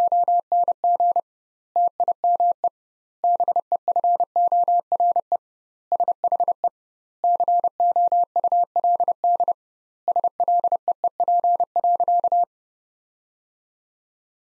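Morse code sent as a single steady mid-pitched beep, keyed in dots and dashes at 30 words per minute with doubled gaps between words; it stops about twelve seconds in. It is the first sending of the sentence spoken right after it: "It was a long time before she could sleep."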